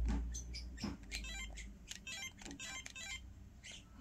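A Flipper Zero's directional pad being mashed with a thumb: a quick, uneven run of faint small clicks, about three or four a second.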